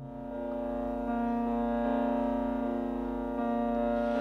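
Steady drone of held notes with an organ-like tone opening a Carnatic instrumental track, starting abruptly after silence and swelling slightly as further pitches join about a second in.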